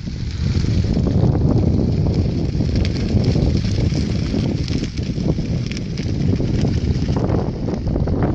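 Wind rumbling heavily on the microphone at a burning grass fire, with scattered sharp crackles through it.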